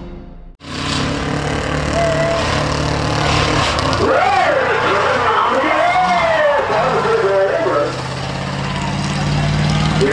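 Title music ends within the first half second, then race vehicles' engines run steadily on the track, including the Gauntlet school bus pushing a stock car. From about four seconds in, a voice talks over the engine noise.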